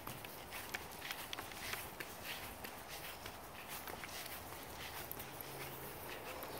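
Footsteps walking across a dry cemetery lawn, light irregular steps, over a steady background hum of distant traffic.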